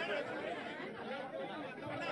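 Crowd chatter: many voices talking at once, with no single voice standing out.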